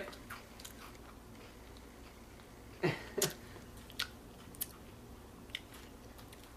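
Chewing and crunching on a sweet potato snack stick: a few scattered crunches, the loudest two close together about three seconds in.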